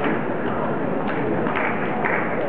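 Table tennis ball being hit back and forth in a rally, several sharp knocks of ball on bat and table roughly half a second apart, over the background murmur of a hall.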